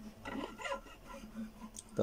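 Faint scraping and squeaks of fingers shifting on the strings of a nylon-string classical guitar as a Cmaj7 chord shape is fretted, mostly in the first second, with no note yet plucked.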